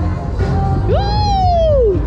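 Fairground ride music with a heavy bass beat. About a second in, a single high cry leaps up in pitch and then slides slowly down over nearly a second.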